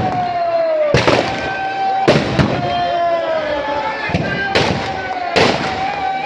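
Firecrackers packed inside burning Dussehra effigies going off in sharp bangs, about seven of them, roughly one a second. They sound over a held whistling tone that slowly falls in pitch.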